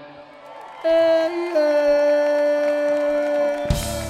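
Live rock band in a breakdown: a short, quieter pause, then a single long held note that drops slightly in pitch early on, before the full band with drums and guitar crashes back in near the end.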